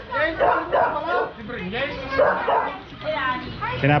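People talking and calling out to one another in lively, broken-up exchanges.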